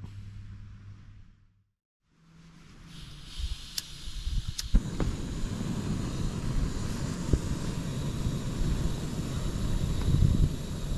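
A backpacking gas canister stove being lit: two sharp clicks a few seconds in, then the burner catches and runs with a steady hiss.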